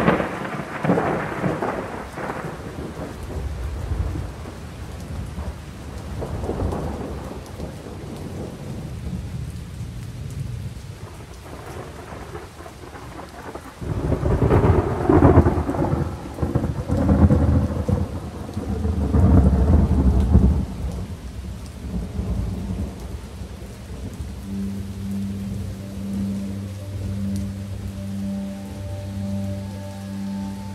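Recorded rain with rolling thunder, the heaviest rumbles coming about halfway through. Near the end a low, pulsing musical note enters under the rain.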